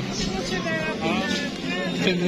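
People talking over crowd chatter, with a steady low hum underneath.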